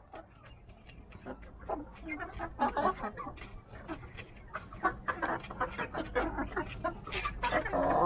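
A flock of Rhode Island Red hens clucking as they feed, many short calls overlapping throughout, with a louder call near the end.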